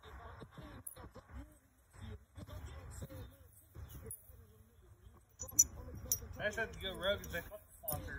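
Faint metal clinks of throwing washers knocked together in a hand, with one sharper clink about five and a half seconds in, and faint distant talk near the end.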